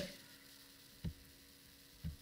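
Faint steady electrical mains hum, with a single short click about a second in.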